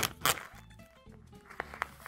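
Cellophane wrap on a pack of fabric charm squares crinkling as it is peeled open: two sharp rustles right at the start. Then a quieter stretch with light background music and two soft clicks near the end.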